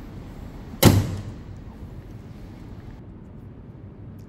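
A single heavy slam about a second in, fading out over about a second into a low hiss.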